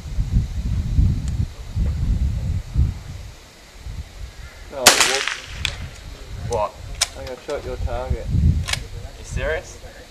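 A single sharp rifle shot about five seconds in, the loudest sound, with a short echo after it. A few fainter sharp cracks follow over the next few seconds.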